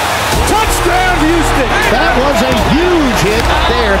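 Voices shouting over a music bed with a steady low bass.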